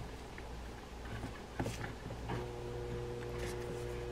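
Faint, scattered clicks and light taps of small metal spinning-reel parts being handled and fitted onto the reel's shaft. A steady hum comes in about halfway through.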